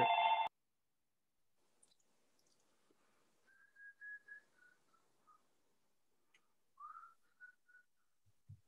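An electronic phone ring that cuts off abruptly about half a second in. After it come faint, short whistled notes: a few stepping down in pitch midway, then a quick rising swoop and three brief notes near the end.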